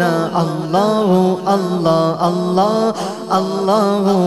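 A man singing a drawn-out, ornamented hamd melody into a microphone over a steady low drone.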